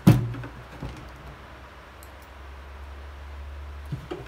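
A single sharp knock of hard plastic right at the start as the tackle pod is handled, followed by a few faint handling clicks; a quieter click near the end.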